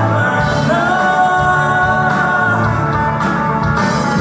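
A live band playing with male singing over a drum kit and electric bass guitar. A note slides up a little under a second in and is held for about two seconds.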